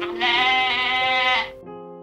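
A cartoon character's voice calling out one long held note, about a second long, most likely Crong's call of his own name in the roll call, over children's background music.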